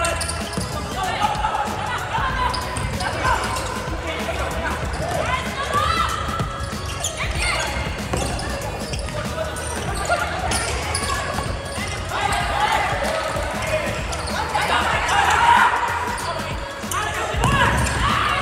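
Live futsal play in an indoor sports hall: the ball being kicked and bouncing on the court floor, with players' voices calling out over the echoing hall.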